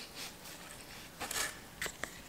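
Stiff leaves and stems rustling and scraping as hands work them into a flower arrangement, with a short scrape about a second in and a brief click near the end.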